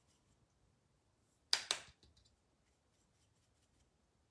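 Two sharp taps in quick succession, about a second and a half in, from craft supplies being handled on a tabletop. Faint room tone otherwise.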